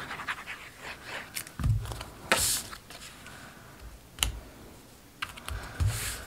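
Cardstock being handled and glued: paper rustling and sliding, light scratches and scattered small taps and clicks, with a soft knock and a brief rustle about two seconds in as the layers are pressed down onto the table.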